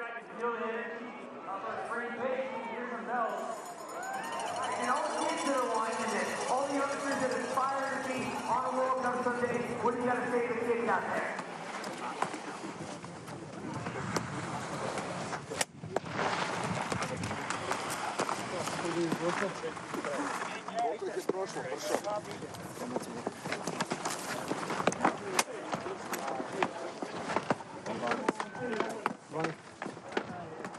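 Outdoor ski-race ambience: a voice talking for about the first ten seconds, then a busier stretch of background voices with frequent sharp clicks and knocks, typical of ski boots, skis and poles being handled in a start area.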